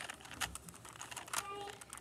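Plastic Rubik's cube being twisted by hand: a few irregular clicks as its layers turn.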